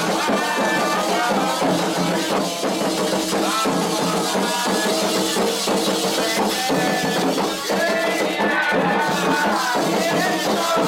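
Candomblé ritual music: hand drumming with rattles and sung chanting, a steady toque for the orixá Oxum.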